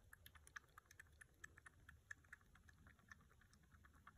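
Young kitten suckling milk from a feeding bottle: faint, rapid wet clicks of its mouth on the teat, several a second.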